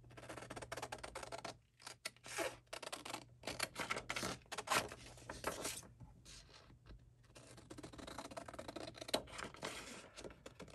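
Scissors snipping through a sheet of patterned scrapbook paper: a long run of quick cuts, pausing briefly twice.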